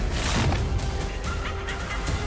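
Trailer soundtrack: a harsh, noisy cry-like sound effect that falls in pitch in the first half second, over music with a few held tones.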